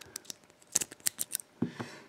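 A rake pick worked in and out of the keyway of a three-pin BASTA bicycle lock's pin-tumbler cylinder under a tension wrench: a quick run of small metallic clicks, about half a dozen in the middle. The pins set almost at once, the mark of a very poor lock.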